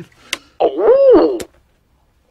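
Novelty bicycle bell sounding: a short click, then one voice-like 'oh' that rises and falls in pitch, lasting under a second.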